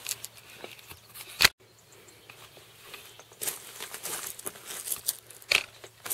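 Clothing rustling and handling knocks close to the microphone as someone moves about and settles back into a seat. A sharp click about one and a half seconds in is followed by a brief gap in the sound.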